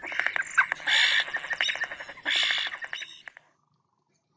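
European starling song: rapid rattling trains of clicks alternating with harsh, grating chatter bursts, which stop abruptly a little over three seconds in.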